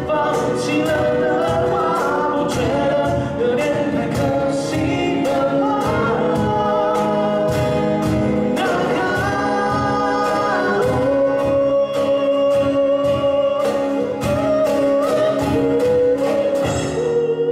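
Live acoustic band: two acoustic guitars played over a steady cajón beat, with male voices singing a pop song.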